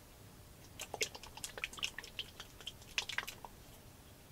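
Brush working thick wet acrylic paint onto a canvas: a run of faint, quick, sticky clicks and ticks starting about a second in.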